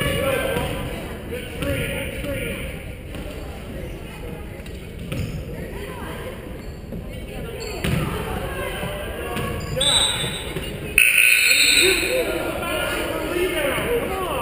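Basketball dribbling on a hardwood gym floor, with voices echoing in the large gym. A sudden louder stretch of noise begins about eleven seconds in.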